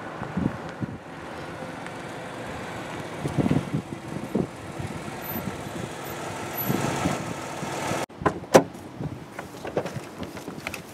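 A Pontiac Grand Prix sedan drives up and slows to a stop, its engine and tyres running steadily. Near the end come a few sharp clicks, the loudest sounds, as a car door is unlatched and opened.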